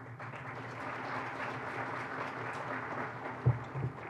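Audience applauding steadily, easing off near the end, with two dull low thumps shortly before the end.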